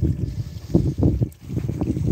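Uneven low rumble of wind buffeting the microphone, rising and falling in gusts, with a brief lull about one and a half seconds in.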